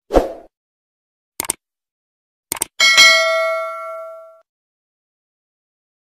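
Subscribe-button animation sound effects: a soft pop, a pair of clicks, then another pair of clicks. These are followed by a bright bell ding that rings out for about a second and a half.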